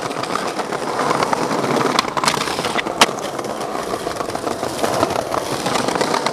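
Skateboard wheels rolling over paving slabs with a continuous rough rumble, broken by a few sharp clacks, the loudest about three seconds in.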